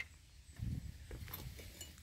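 Quiet outdoor wind rumbling on the microphone, with a brief low gust a little after half a second in and a few faint ticks of handling noise.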